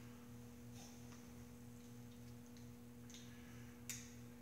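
Near silence over a faint, steady electrical hum holding two even tones, with one brief click near the end.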